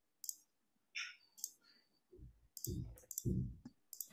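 A few faint, sharp clicks in the first second and a half, then three short, muffled thumps, with silent gaps between them.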